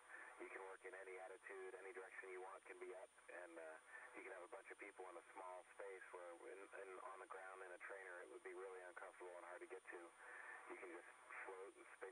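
A man's voice talking without pause, sounding thin and narrow as over a radio link, with a faint steady high-pitched whine behind it.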